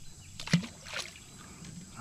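A small bream (bluegill) dropped from the hand into the pond: a brief splash about half a second in, then a fainter sharp sound about a second in.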